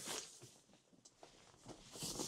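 Near silence, with faint rustling handling noise that grows slightly louder near the end.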